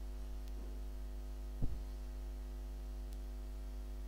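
Steady electrical mains hum, a low buzz with a ladder of overtones, picked up by the recording microphone. It is broken once, about a second and a half in, by a brief soft knock.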